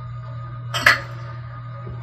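Soft ambient background music over a steady low hum, with one sharp clack a little under a second in as a small ceramic bowl is set down on a wooden cutting board.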